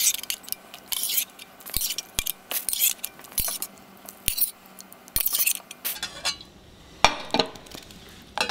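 Slotted metal spoon scraping and clinking against a stainless steel saucepan as boiled mushroom pieces are scooped out and moved to another pot: a run of short, irregular scrapes with several sharp clicks.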